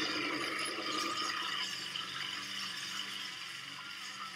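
Film sound of a petrol lawnmower running hard, a dense, steady rattle with a low engine hum, easing off slightly toward the end.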